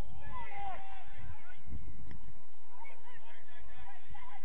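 Distant shouted calls across a youth football pitch: a few rising-and-falling cries in the first second or so and fainter ones later, over a steady low rumble.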